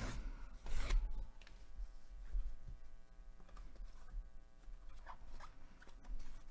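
Paper and cardboard packing rustling and scraping as it is pulled open by hand, with one louder rustle about a second in, then fainter rustles and a few small ticks.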